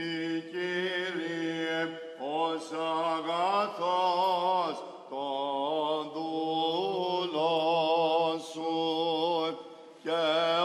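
A male cantor singing Byzantine liturgical chant: long held notes with wavering ornaments, in phrases with short breaks about two seconds in, about five seconds in, and just before the end.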